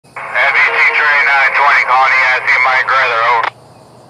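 Speech over a two-way railroad radio: a thin, narrow-band voice transmission that stops about three and a half seconds in.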